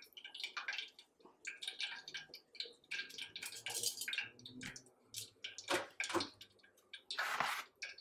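Hot frying oil in a saucepan crackling and popping irregularly, the last of the moisture from the fried shrimp bubbling off, with one louder burst of hiss near the end.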